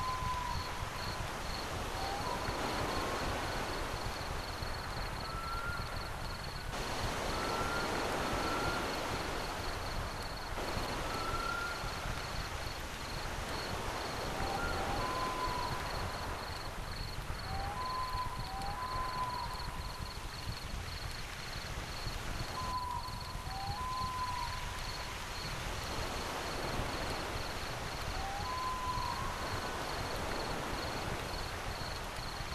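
Short whistled bird calls, one or two brief slurred notes at a time, recurring every few seconds over a steady background hiss, with a faint, evenly pulsing high-pitched tone running underneath.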